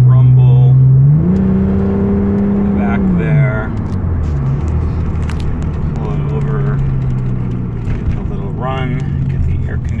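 1990 Nissan 300ZX's 3.0-litre V6 heard from inside the cabin while driving, with a small exhaust hole. The engine note rises sharply about a second in, holds for about two seconds and falls back, then runs steadily at lower revs as the car slows.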